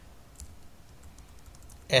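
Computer keyboard typing: a quick, irregular run of faint key clicks as text is typed and backspaced.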